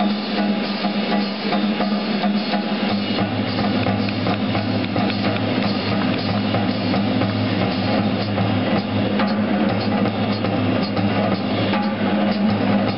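Live jazz big band playing, with the drum kit prominent and steady held low notes under it. A lower note comes in about three seconds in.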